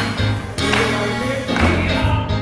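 Live gospel music from a church mass choir and band, with a steady bass line and the congregation clapping along on the beat.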